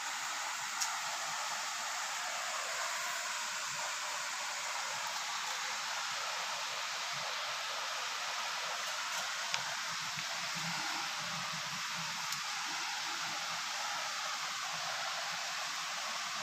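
Steady, even hiss of background noise, with a few faint clicks.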